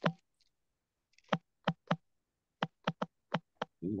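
Sharp clicks, about nine of them at uneven intervals: a loud one right at the start, then a scattered run from about a second in.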